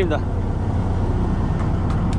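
Fishing boat's engine running at idle, a steady low drone.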